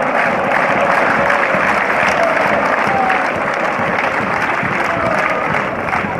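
A crowd of football supporters applauding, a dense, steady clapping noise with voices heard through it.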